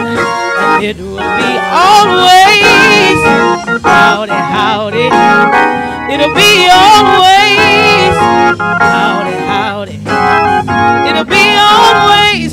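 A woman singing a slow solo with heavy vibrato, her sustained notes bending and wavering, over electronic organ accompaniment.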